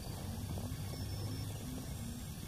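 A low steady hum with a faint wavering tone above it, and a few faint ticks.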